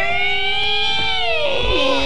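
A long, creaking, wavering sound effect of a door being pushed open. Its pitch drifts slightly upward, then slides down and settles lower near the end.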